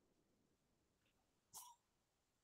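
Near silence on a video call, broken once by a brief faint click about one and a half seconds in.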